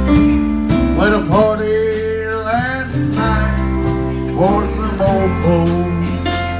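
Live country band playing the instrumental intro to a waltz: a lead guitar melody with notes sliding up and down over bass and a steady drum beat.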